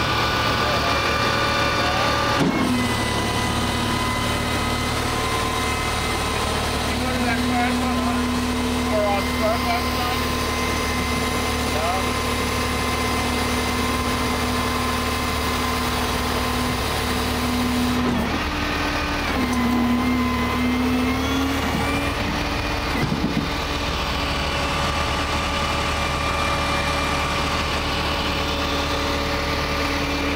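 Flatbed tow truck's engine idling steadily, a constant low hum whose pitch steps up and down a few times.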